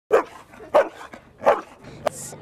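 A dog barking three times, short sharp barks about two-thirds of a second apart.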